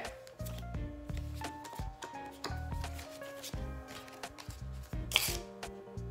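Soft background music with a simple stepping melody over a bass line, under the dry rubbing and flicking of Pokémon trading cards being slid and flipped between fingers, with a brief scraping rustle about five seconds in.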